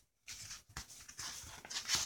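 A paper page of a picture book rustling as a hand handles it and turns it over, loudest near the end as the page flips.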